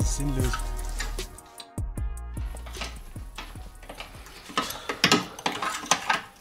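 Hip-hop music with rapping, which stops about a second and a half in. Then come scattered metallic clicks and clinks of a hand wrench working on the car's front suspension, busiest near the end.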